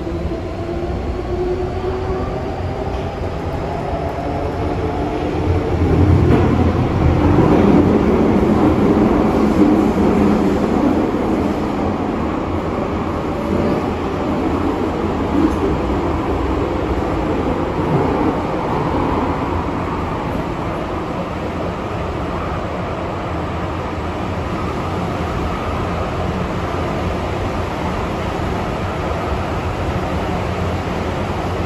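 Hong Kong MTR M-train metro car running in service, heard from inside by the doors: a steady rumble of wheels on rail, with a whine gliding in pitch over the first few seconds. It grows louder from about six seconds in, then settles back to a steady run.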